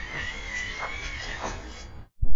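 Droll Yankees Flipper feeder's battery motor whirring as it spins the weight-triggered perch ring under a squirrel, a steady whine that wavers slightly in pitch and stops shortly before the end.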